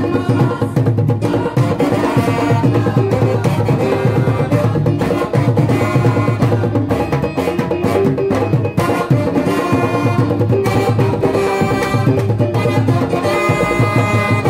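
Live band playing: saxophone and brass with keyboard over drums, loud and continuous.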